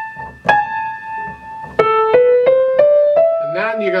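Grand piano played with the left hand alone. A high note is struck twice, then the line drops an octave and climbs step by step through four more single notes.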